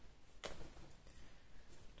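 Faint handling of craft materials as a paper button is threaded onto a cord, with one small click about half a second in.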